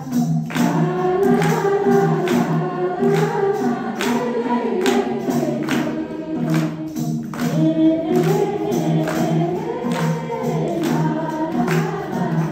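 Nepali devotional bhajan sung by women into microphones, with other voices joining in. A steady percussive beat runs underneath at about two strikes a second.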